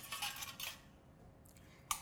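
Metal spoon faintly clinking and scraping against a stainless steel mixing bowl as dressing is spooned over a salad, mostly in the first second.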